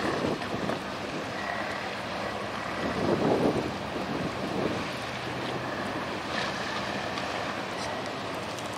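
A small workboat's engine running on the river under wind buffeting the microphone, with water noise; the sound swells briefly about three seconds in.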